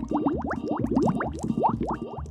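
Cartoon underwater bubble sound effect: a rapid string of rising bloops, several a second, over a low pulse about twice a second.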